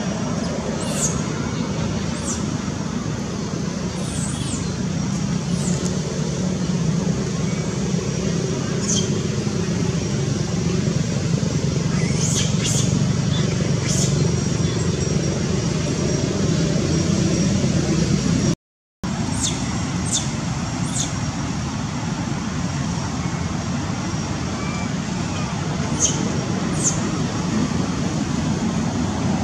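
Steady low rumble of outdoor background noise with short, high chirps that fall in pitch every second or two. The sound cuts out completely for a moment about two-thirds of the way through.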